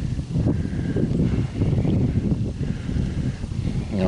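Wind buffeting the microphone outdoors: a low, irregular rumble that swells and dips.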